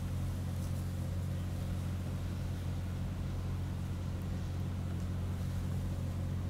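Steady low background hum, even throughout, with no distinct events over it.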